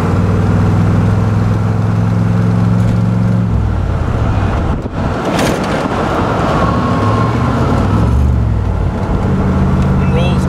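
A 1966 Corvette's 300 hp 327 cubic-inch V8 running under way, heard from the driver's seat over road noise. The engine note holds steady, drops and breaks up about three and a half seconds in, and settles into a steady note again near the end.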